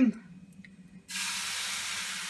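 Waffle batter sizzling on the hot plate of an electric heart-shaped waffle iron as it is poured from a ladle: a steady hiss that starts suddenly about a second in.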